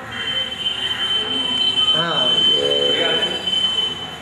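A steady, high-pitched single tone held for nearly four seconds, with people's voices beneath it.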